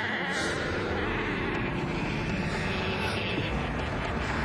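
Film soundtrack sound effect: a steady, dense low rumbling drone with no speech.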